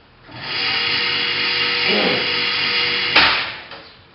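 Electric target carrier motor whirring steadily as it runs the target card back along its wire to the firing point. It ends a little after three seconds in with a sharp knock as the carrier reaches the end of its run.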